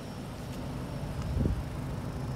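Steady low hum over outdoor background noise, with one soft low thump about one and a half seconds in.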